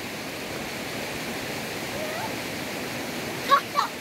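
A fast-flowing river rushing steadily. Short voice calls come over it, loudest just before the end.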